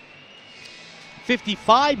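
Low, even arena crowd noise under a hockey broadcast, then a male commentator's voice resumes about a second and a half in.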